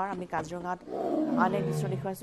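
A Bengal tiger roaring: one long, rough call that starts about a second in and falls in pitch.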